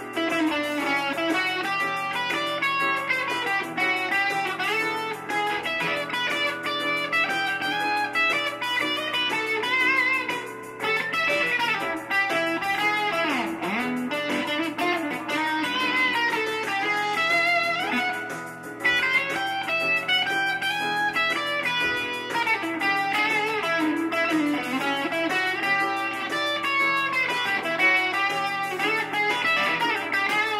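Electric guitar played continuously in practice, with notes bent and sliding in pitch about halfway through.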